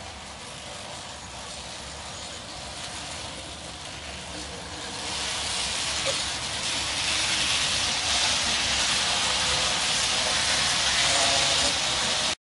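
N scale model train, a brass locomotive pulling passenger cars, running round a curve: a steady hiss of motor and wheels on rail that grows clearly louder about five seconds in as the train passes close by, and stays loud.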